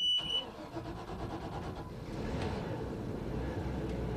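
A small workboat's diesel engine, fuelled with filtered recycled French fry cooking oil, starting and running steadily. It grows a little louder from about two seconds in.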